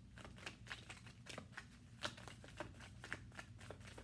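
A deck of tarot cards being shuffled by hand: a quick, irregular run of soft card flicks.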